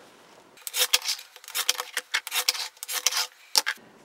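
Excess cotton batting being trimmed from the edges of a quilted fabric block: a quick, irregular series of short cutting strokes starting about half a second in.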